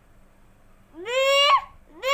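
A young child's high voice calling out one long, drawn-out word about a second in, its pitch sliding up and then holding.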